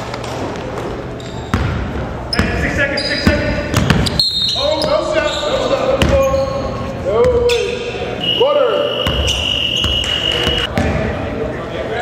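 Basketball bouncing on a gym's hardwood floor during play, with players' voices echoing in the large hall and short squeaks of sneakers on the floor about seven to eight seconds in. A steady high tone sounds for a couple of seconds near the end.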